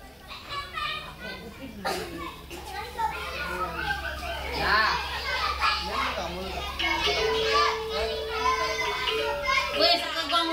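A group of young children chattering and calling out all at once, with laughter. A single steady note is held for about two seconds late on.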